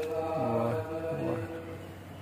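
Sikh devotional chanting (gurbani kirtan) from the gurdwara: sustained held tones with a man's voice rising and falling in the first second and a half.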